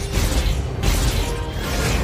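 Action-movie fight sound design: loud mechanical clanking and whooshing effects with several sharp hits, mixed over a music score.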